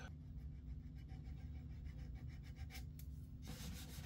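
Faint rubbing of very fine sandpaper over violin varnish, a run of short strokes that get louder near the end, feathering the edges where a varnish retouch overlaps the original finish.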